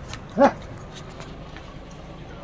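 A dog barks once, a short single bark about half a second in, over a low steady background hum.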